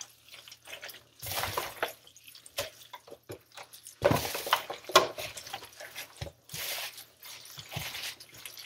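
Wet, irregular squelching of moist pulled pork being squeezed and tossed by gloved hands in a deep aluminium foil pan, as fat, juices and dry seasoning are worked through the meat.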